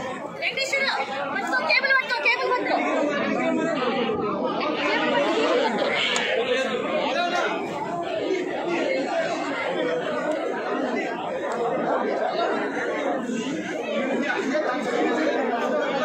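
Many people talking over one another at once: continuous crowd chatter.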